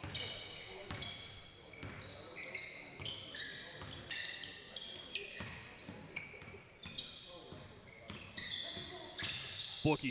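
Basketball dribbled on a hardwood court, with many short, high-pitched sneaker squeaks as players cut and stop.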